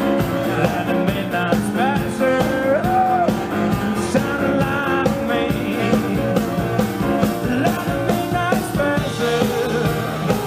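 Live rock-and-roll band playing: a saxophone solo with bent and held notes over keyboard and drums.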